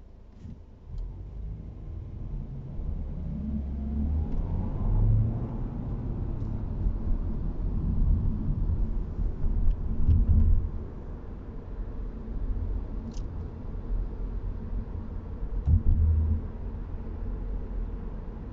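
Audi A4 Avant heard from inside the cabin, pulling away from a standstill and accelerating. A low engine and road rumble builds up, with an engine note that rises a few seconds in. There are heavier low thumps about ten and sixteen seconds in.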